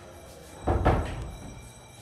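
A door being shut: one heavy thud just under a second in, dying away over about half a second. Kirtan music carries on in the background.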